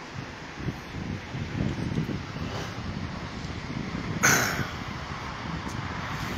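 Open-air roadside ambience: a steady rush of passing traffic and wind on the microphone, with a brief louder rush about four seconds in.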